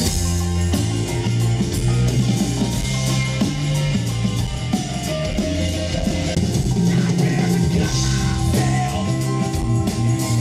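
A live band playing rock music, with guitar over a drum kit's steady beat and a moving bass line.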